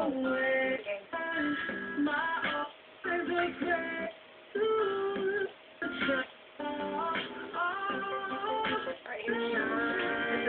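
A song playing: singing over guitar, in short phrases with brief pauses between them.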